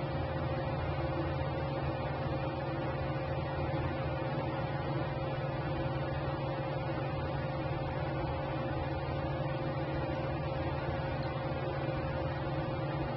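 Ceiling fan running, a steady hum with a constant tone and a low drone beneath.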